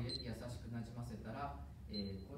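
People talking, with a short high beep just after the start and another at the very end.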